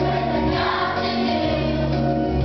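Children's choir singing together, with instrumental accompaniment holding steady low notes underneath.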